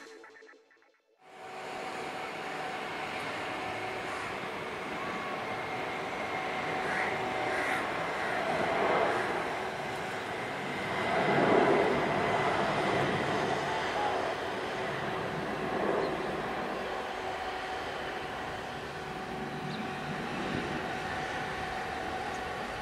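A Boeing 747's four turbofan engines at takeoff power during its takeoff roll to lift-off, heard as a steady distant jet rumble that starts about a second in and swells twice midway.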